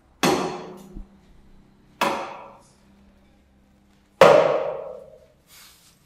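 Three sudden impact hits about two seconds apart, each dying away over about a second, the third the loudest, over a faint steady hum. They are edited-in dramatic sting effects on the reaction shots.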